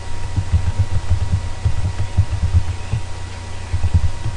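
Computer keyboard typing, the keystrokes coming through as quick, irregular dull thumps over a steady low hum.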